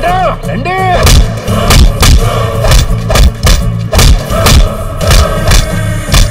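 Film fight-scene soundtrack: a background score under a rapid series of punch and hit sound effects, about two a second, preceded by two short shouts in the first second.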